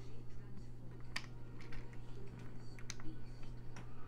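Plastic Lego bricks clicking as small pieces are pressed and snapped onto a model: several sharp separate clicks over a steady low hum.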